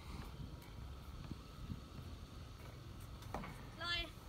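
Steady low outdoor rumble with a few faint clicks, and a short voiced sound from a person near the end.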